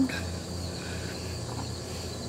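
Insects trilling steadily at a high pitch, over a low steady hum.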